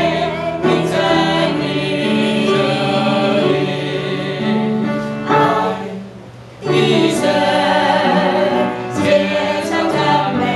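A small group of men and women singing a Chinese hymn together, with a short break in the singing about six seconds in.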